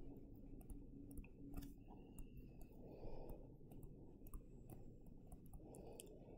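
Faint, irregular clicks and taps of a stylus on a tablet screen during handwriting, over a low steady room hum.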